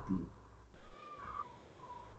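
A man's speech breaks off at the start, then two faint, short high-pitched animal calls, the first about a second in and the second near the end.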